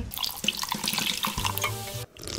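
A fizzy pink drink poured from a bottle into a wine glass, a steady splashing pour with the bubbles fizzing.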